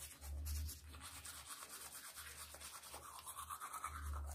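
Manual toothbrush scrubbing teeth: faint, quick back-and-forth brushing strokes.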